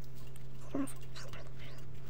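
Mechanical pencil writing numbers on lined paper, short scratchy strokes over a steady low hum.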